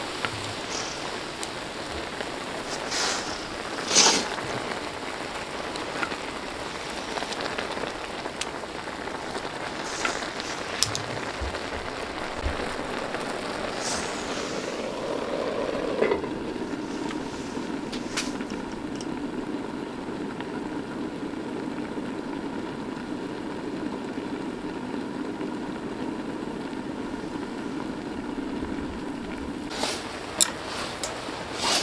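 Ramen broth boiling hard in a wide shallow pan, with a few sharp clacks of chopsticks and utensils against the pan. About halfway through a lid is set on with a knock, and the boiling carries on duller underneath it.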